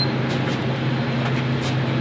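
Gas-station fuel pump running with a steady low hum while fuel flows through the nozzle into the Kitfox's tank.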